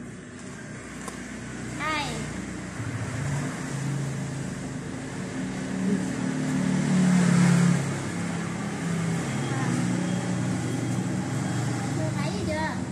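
A motor vehicle engine running, a steady low drone that swells louder in the middle, with a brief high chirping call about two seconds in.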